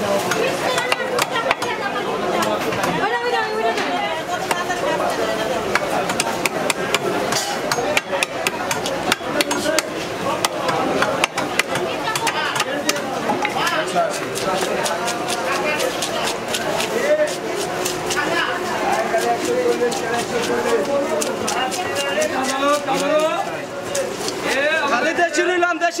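Carp being scaled by hand against an upright bonti blade: quick scraping strokes with many sharp clicks, over steady chatter of voices.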